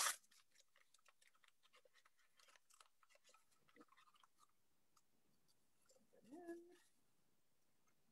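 Near silence: faint rustling and small clicks of hands handling things, with one brief faint vocal sound a little after six seconds.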